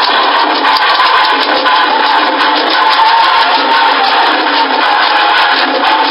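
Loud, dense music with a sustained tone running through it.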